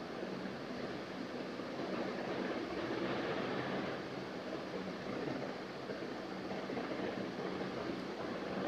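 Steady background room noise: an even hiss with a faint low hum.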